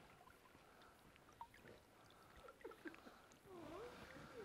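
Near silence: faint outdoor ambience with a few faint, short chirps and ticks, growing slightly louder near the end.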